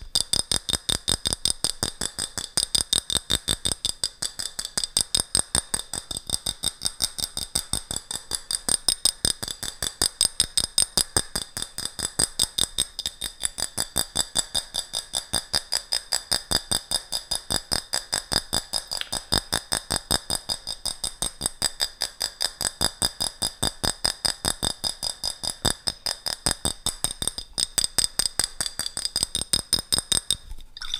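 Fingers tapping on a small glass jar with a metal screw lid, a fast, even run of about five taps a second, with a steady high ringing above the taps.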